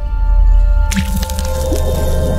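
Outro logo jingle: music with a deep bass drone and steady held tones, and a sudden splat-like hit about a second in that leads into a fuller sustained chord.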